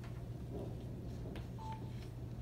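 Quiet room with a steady low hum and faint rustling and clicks of movement. A single short electronic beep sounds about a second and a half in.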